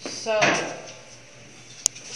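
A man's voice says a drawn-out "So," then near the end comes a single sharp click.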